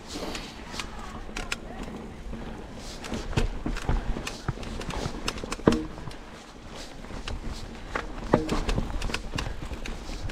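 Mountain bike clattering over rocks and roots on a descent, a quick irregular run of knocks and rattles from the tyres, chain and frame, with wind rumbling on the microphone.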